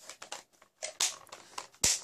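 Hard plastic toy blaster being handled, with light rustles and small clicks, a brief crinkly rustle about a second in, and one sharp plastic click near the end.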